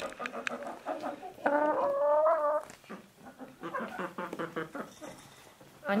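Domestic hens clucking while they peck at food scraps, with one longer pitched call lasting about a second, starting about a second and a half in, and small clicks in between.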